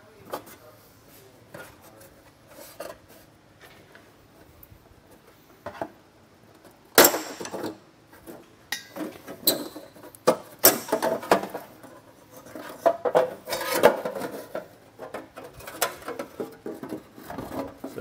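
Thin metal heat shield being pried down off its mounting studs and pulled free: scattered small metallic clicks at first, one sharp clank about seven seconds in, then a long run of crinkling, rattling clatter.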